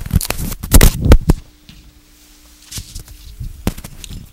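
Handling noise on the microphone: a quick run of loud knocks and crackles, then a faint steady hum with a couple of further clicks near the end.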